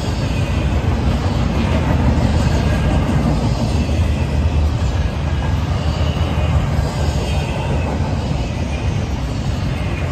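Freight train of empty intermodal well cars and autoracks rolling past, a loud, steady rumble of steel wheels on rail.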